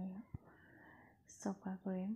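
A woman's voice speaking briefly at the start and again near the end, with a single soft click and faint low noise in between.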